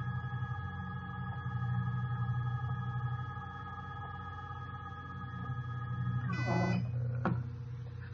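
iOptron CEM60 equatorial mount's RA drive motor whining steadily as it slews at maximum speed. About six seconds in, the whine glides down in pitch and stops as the mount slows to a halt, and a single click follows.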